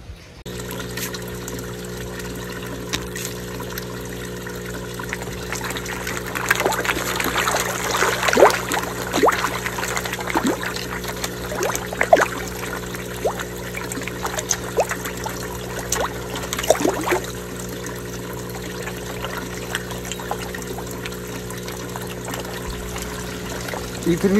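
Koi splashing at the surface as they take floating fish food, in a cluster of short splashes from about six to seventeen seconds in. Under them a steady trickle of pond water with a low, even hum.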